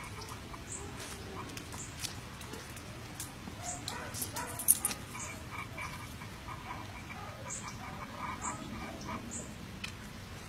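A dog making small sounds, with faint high chirps about once a second and a single sharp click a little under five seconds in.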